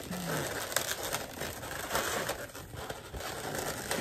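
Latex modelling balloons rubbing against each other and against hands as a twisted balloon figure is handled and adjusted: a steady rustle scattered with small clicks.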